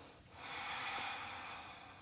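A person's long audible exhale, a breath out lasting about a second and a half that swells and then fades away.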